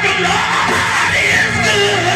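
A Black Baptist preacher whooping, shouting his sermon in a sung, pitched chant into a microphone, over held keyboard chords.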